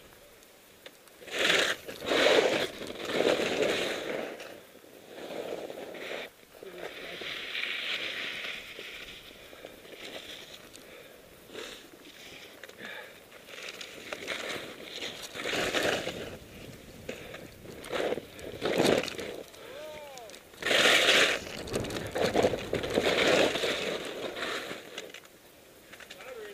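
Snow hissing and scraping under a descent through powder and chopped-up snow, rising and falling in irregular surges with the turns.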